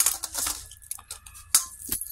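Metal clinking and rattling at a stainless steel dog bowl of kibble: a string of sharp clinks, loudest about half a second in and again about a second and a half in.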